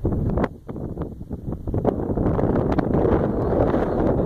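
Wind buffeting the camera's microphone: a loud, rumbling rush with scattered crackles, dipping briefly about half a second in, then louder and steadier from about halfway.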